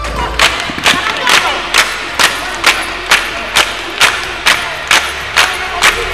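A circle of women clapping hands together in time for giddha, a steady beat of about two claps a second, with a crowd of women's voices calling and singing over it.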